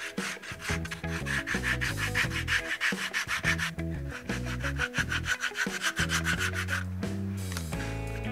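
Sandpaper rubbed by hand along the edge of a leather card wallet: rapid back-and-forth scratchy strokes that stop about seven seconds in.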